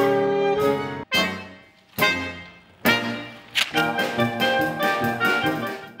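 A jazz band with a saxophone section playing: held chords that break off about a second in, two or three short stabs with gaps between them, then a run of quick, punched notes.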